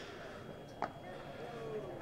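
Quiet outdoor cricket-ground background with a single short, sharp crack a little under a second in: the bat striking the ball on a scoop shot.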